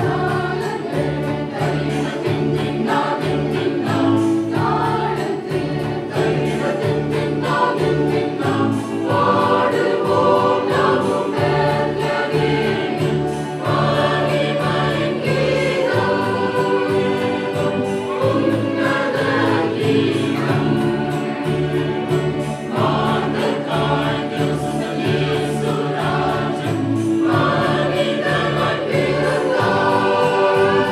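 Mixed choir of children and adults singing a Christmas carol in unison and harmony over a steady beat.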